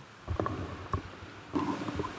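A few short low thumps from hands and objects knocking on the desk near a table microphone, followed by a faint murmur near the end.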